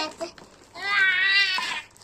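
A child's high-pitched laugh, about a second long, its pitch wavering up and down.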